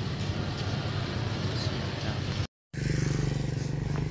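Small underbone motorcycle engine idling with a steady low hum; the sound drops out for a moment about two and a half seconds in, then the idle carries on.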